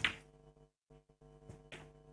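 Faint clicks of snooker balls striking about one and a half seconds in, as a red is potted, over a low, steady background tone.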